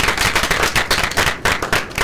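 A small audience applauding: loud, closely spaced hand claps, some right by the microphone.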